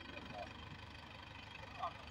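Belarus MTZ-82 tractor's four-cylinder diesel engine running steadily, a faint low rumble under load pulling a baler.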